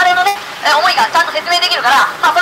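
A man's voice speaking through a handheld microphone and loudspeaker at an outdoor street speech.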